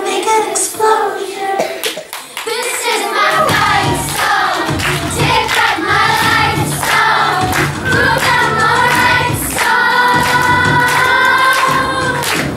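A group of children singing a song together, with a low instrumental accompaniment coming in about three seconds in.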